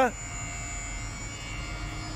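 Electric drive of an animal ambulance's lift running with a steady, even hum.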